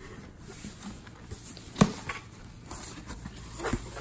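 Cardboard shipping box being opened by hand, its flaps pulled back with faint scuffs and rustles, and a single sharp knock a little under two seconds in.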